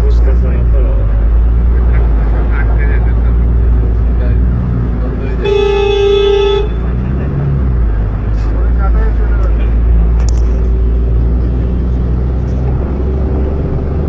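Steady low rumble of a car driving slowly through a flooded street, heard from inside the cabin. A car horn gives one honk of about a second midway through.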